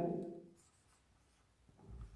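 Marker pen writing on a whiteboard: faint strokes of the tip against the board, with a slightly louder stroke near the end.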